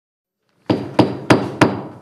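A gavel rapped four times in quick succession, about a third of a second apart, each rap sharp and ringing briefly.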